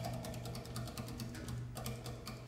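Quiet free-improvised jazz: a drum kit played with fast, irregular light clicks and taps over a low held tone.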